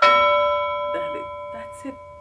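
A single bell-like chime struck once, ringing out with several clear tones and slowly fading over about two seconds: an edited-in sound effect that comes with the subscribe and social-media overlay popping up.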